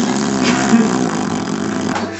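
A man's long, loud yell of rage, rough and distorted, lasting about two seconds and stopping at the end.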